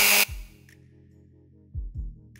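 A Dremel rotary tool grinding into a chicken eggshell with a high whine cuts off suddenly a moment in. Faint background music with soft bass beats follows.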